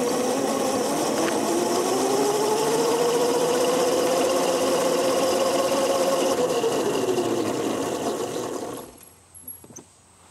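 Razor electric go-kart motor whining under power over tyre and rattle noise, its pitch climbing, holding, then falling as the kart slows. It cuts off abruptly about nine seconds in.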